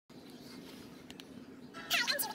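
A low steady hum with two faint clicks about a second in, then sound from a video on the laptop's speakers starting just before the end.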